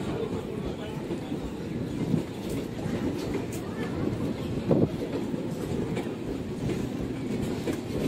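Electric multiple-unit suburban local train running past on the rails, a steady rumble of wheels and coaches with some clatter over the track.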